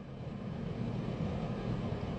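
Low, steady background rumble with no speech over it.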